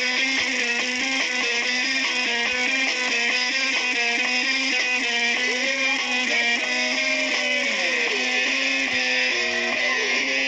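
Electric guitar played live through an amplifier, a melody of held notes with several bent, sliding notes in the middle.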